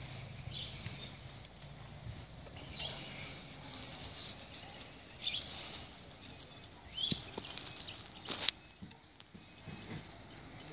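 Quiet outdoor background with short bird chirps every couple of seconds. Two sharp clicks come about seven and eight and a half seconds in, the second one the loudest sound.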